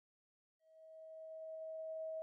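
A steady 639 Hz sine tone fades in slowly after about half a second of silence.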